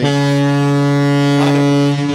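Ship's horn sounding one long, steady blast, a deep note with many overtones.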